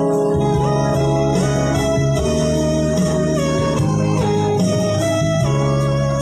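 Keyboard music with an electronic organ sound, playing sustained chords at a steady level: the instrumental close of a farewell song.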